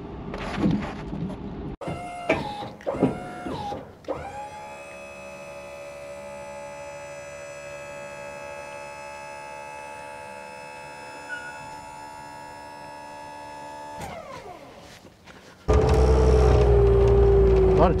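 A motor whine spins up, holds a steady pitch for about ten seconds and winds down. It is followed by a much louder, deep running sound with a slowly falling tone near the end.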